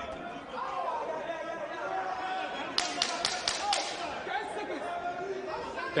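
Voices and chatter echoing in a large hall during a boxing bout. Just under halfway through comes a quick run of about six sharp smacks within a second.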